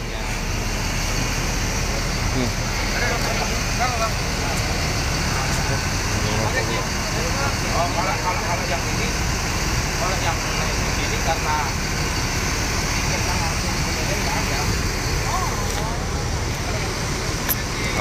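Steady low rumble of idling diesel bus engines, with scattered voices of people talking in the background.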